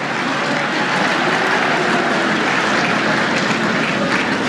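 Large audience laughing and applauding after a joke: a dense, steady wash of clapping with laughter mixed in.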